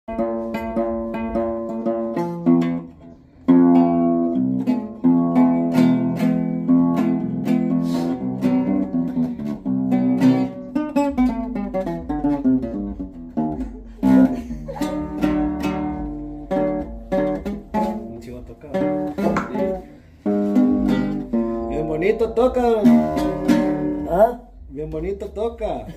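Acoustic guitar played solo: a melody of single plucked notes, several a second, each ringing on, with two short pauses.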